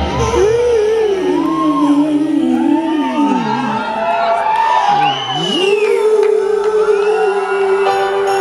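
A female pop singer singing the song's opening live through a microphone in a large hall, sweeping up and down in long vocal runs over sustained backing chords. About six seconds in, the music settles on a long held note.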